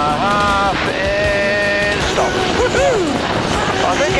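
A high voice holding long, steady pitched notes, then gliding up and down near the end, over the steady drone of the stunt biplane's engine.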